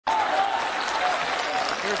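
Studio audience applauding, with a man's voice starting over it near the end.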